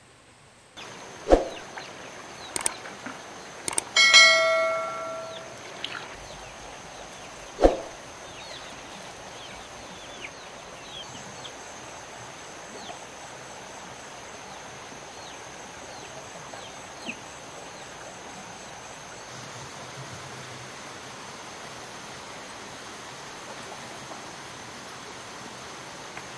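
Forest ambience with a steady high insect hum and faint bird chirps. Early on, a few sharp knocks and one short metallic ring about four seconds in, with another knock near eight seconds.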